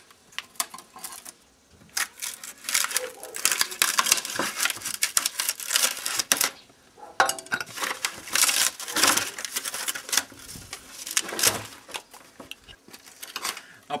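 Knife blade scraping and prying old plywood that has rotted almost to dust off a wooden board, the brittle veneer crackling and tearing away in quick irregular strokes, with a couple of short pauses.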